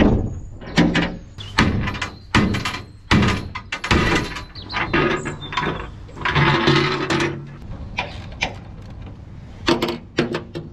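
Repeated metal clunks and knocks from steel hatch covers and fittings being handled on a steel barge deck, about one a second at first, with a scraping, ringing rasp a little past halfway as a hatch lid is swung up.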